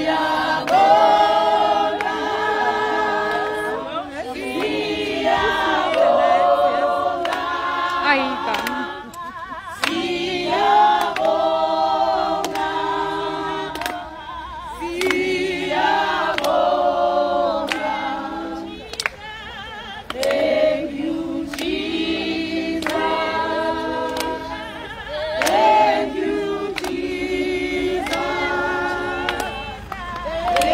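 A group of people singing together a cappella, in phrases of held, sliding notes separated by short breaths, with hand claps.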